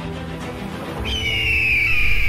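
Outro theme music, joined about a second in by one long, high-pitched cry that slides downward in pitch: a bird-of-prey screech sound effect.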